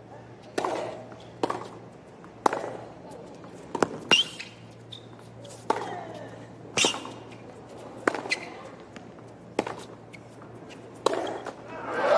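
Tennis rally on a hard court: the ball is struck by the rackets and bounces on the court, one sharp pock about every second. A short player grunt follows some of the strokes.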